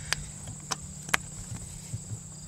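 Three short sharp clicks, spread over about a second, from a rubber spark plug cap being worked onto a spark plug on a Rotax 582 engine, over a steady high-pitched whine and a low hum.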